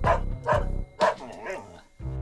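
A dog barking three times, about half a second apart, then a short wavering whine, over background music.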